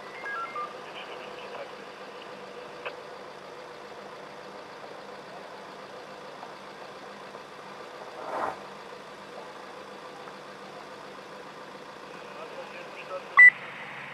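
Police two-way radio between transmissions: a low steady hum with a few short falling beeps at the start, a brief swell of noise midway and a sharp click near the end as the next call keys in.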